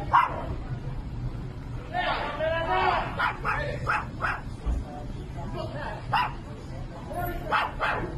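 A man's voice shouting angrily in short, sharp, repeated outbursts.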